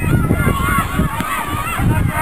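Raised voices of people shouting during a Gaelic football match, with a low rumble of wind buffeting the microphone.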